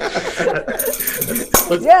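People laughing together over a video call, with a brief high rattling jingle about a second in and a sharp click just after it.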